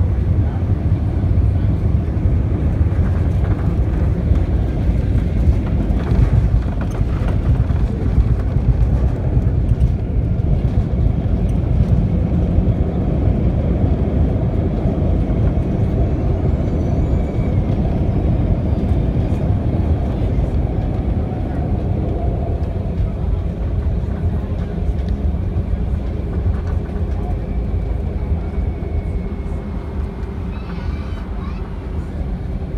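Cabin noise of an Airbus A319 landing and rolling out along the runway with its spoilers up: a loud, steady rumble of wheels, engines and rushing air, easing slightly near the end as the airliner slows.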